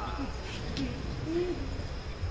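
Faint, brief murmured voice sounds, a few short rising and falling tones, over a low steady hum from the hall's sound system.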